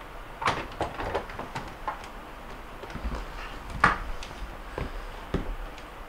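Scattered light knocks and clicks of a refrigerator's bottom-freezer drawer front being seated onto its rail brackets and handled, the sharpest about half a second in and just before four seconds in.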